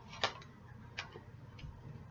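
A few light clicks of tarot cards being handled and laid down on a table, the clearest about a quarter second in and at one second.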